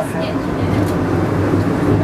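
Penang Hill funicular railway car running on its track, heard from inside the cabin as a steady low rumble and hum.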